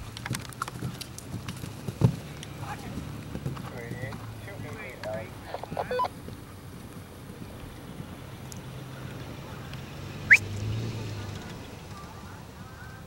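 A horse galloping on turf, its hoofbeats sounding as sharp thuds in the first two seconds as it passes close by, then fading as it moves away. Voices talk faintly from about two to six seconds in. Near the end there is a brief, loud, rising squeak.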